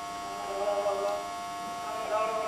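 A recorded phone call playing back through a Samsung Galaxy A80's loudspeaker: a steady electronic hum of several tones, with a faint voice in it.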